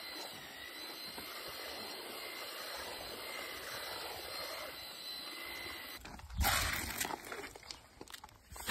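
Handheld electric paddle mixer running steadily, its whirring motor whine churning cement mix in a plastic bucket. It cuts off about six seconds in, and a short loud noisy burst follows.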